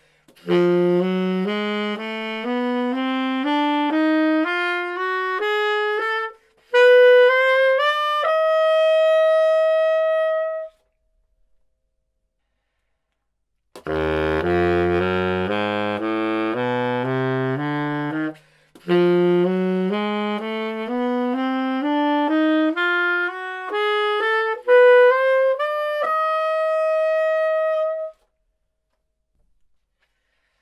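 Conn 12M baritone saxophone with an Otto Link slant mouthpiece playing a C diminished scale upward, note by note from low C to high C, ending on a held top note. After a pause of about three seconds it plays a few low notes and then the same scale again, up to a held top note. The two runs are played with two different ligatures, a Vandoren leather and a François Louis Pure Brass, for comparison.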